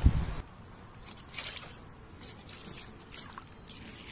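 Faint trickling and dripping of water on a soaked unhooking mat under a wet carp, in a few short hisses, after a brief rush of wind on the microphone at the start.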